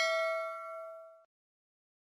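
Ringing tail of a bell-like notification chime sound effect, several clear tones together fading out about a second and a quarter in.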